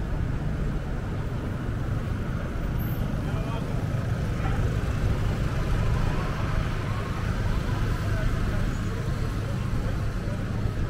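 City street ambience: a steady low rumble of traffic, with indistinct voices of people around.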